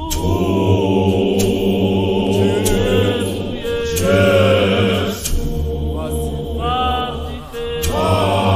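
Zion church choir singing a gospel song, several voices with wavering held notes over a steady low backing, with a few sharp hits.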